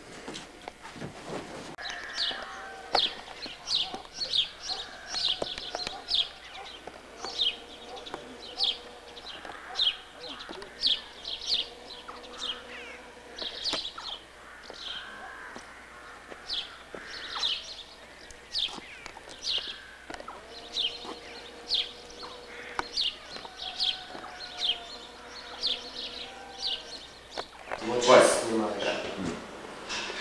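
Small birds chirping over and over outdoors: short, sharp, high chirps, one or two a second, starting about two seconds in.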